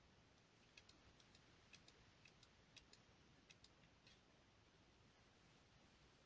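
Faint computer mouse clicks, about a dozen, many in quick pairs, over roughly three seconds.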